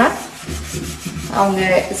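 Scrub pad rubbing over the soapy inside of a new cast iron kadai, washing it with liquid soap before its first seasoning. A voice speaks over it from about a second and a half in.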